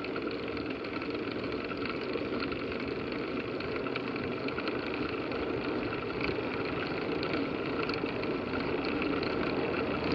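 Steady wind and riding noise from a bicycle climbing a paved road, picked up by a handlebar-mounted camera; an even noise with no distinct events.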